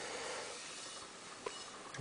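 Quiet room tone with a faint steady hiss and one small click about one and a half seconds in.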